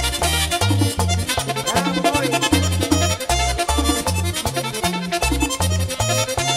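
Merengue típico band playing live in an instrumental stretch with no singing. An accordion melody runs over a bouncing bass line, with tambora and güira keeping a fast, steady beat.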